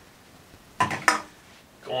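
Drink cans and plastic bottles being set back down on a table: two sharp knocks, a third of a second apart, a little under a second in.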